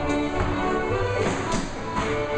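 Live contra dance band playing a lively dance tune on fiddle, accordion and keyboard. Dancers' feet tap and step on the wooden floor over the music.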